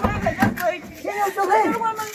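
People talking: voices in lively back-and-forth, no words made out by the recogniser.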